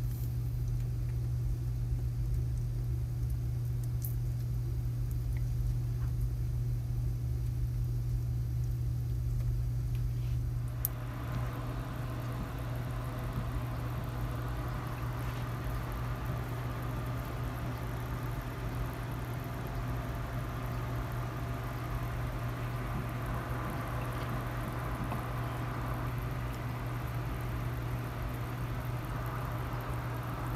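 A steady low hum, like a running motor or fan, with a faint hiss that gets louder about eleven seconds in.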